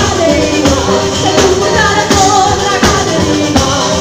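Salentine pizzica played live: a woman sings the melody over a tamburello frame drum with jingles, accordion and a plucked mandolin-family instrument, with regular drum strikes keeping the dance beat.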